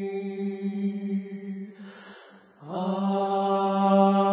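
Men's voices singing a cappella in close harmony: a long held chord fades away about two seconds in, and after a brief pause a new, louder chord begins.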